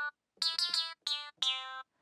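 Sampled clavinet-like note played high in Ableton Live's Simpler with warping off, so each note is sped up and short. A quick cluster of three plucked notes comes first, then two more single notes, the last a little lower.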